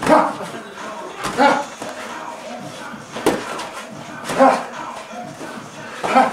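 Short, sharp shouts of "ha!", four of them a second or so apart, over the muffled thuds and shuffling of boxing sparring.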